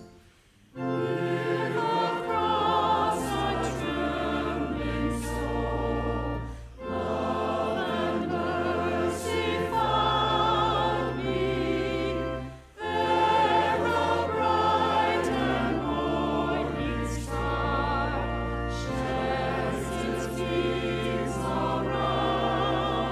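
A church choir and congregation singing a hymn to organ accompaniment, with short breaks between phrases about a second in, around seven seconds and around thirteen seconds.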